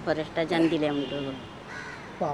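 A woman talking, with a crow cawing in the background near the end.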